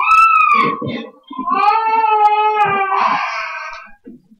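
A person crying out in two long, high-pitched wails. The first rises and falls in under a second, and the second is held for about two seconds before it fades.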